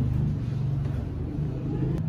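Low, steady rumbling hum of a running motor, with its pitch wavering slightly.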